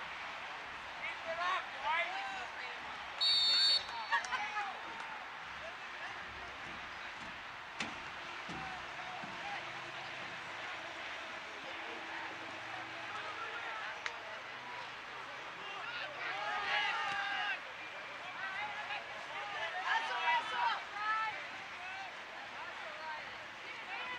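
Outdoor soccer-field ambience: steady open-air noise with players' shouts from across the pitch. A short referee's whistle blast, about half a second long, comes about three seconds in and is the loudest sound.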